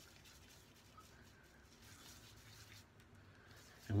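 Faint soft rubbing of a hand spreading shaving foam over a stubbly face and neck, barely above the room tone.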